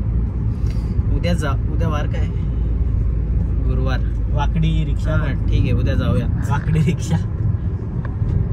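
Steady low road and engine rumble heard inside a moving car's cabin, with a man talking over it in short stretches.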